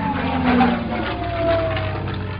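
Title-card sound effect: a steady engine-like rumble with a single whine that falls slowly in pitch throughout.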